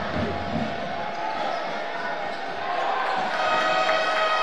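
A basketball bouncing on the hardwood court during live play, over the steady noise of the arena crowd, which grows a little louder in the second half.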